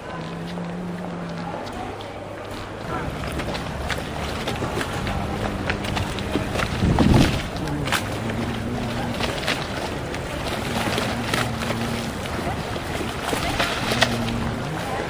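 Choppy lagoon water slapping and splashing against moored gondolas and the stone quay, with wind buffeting the microphone. A low hum comes and goes underneath, and the sound swells briefly about seven seconds in.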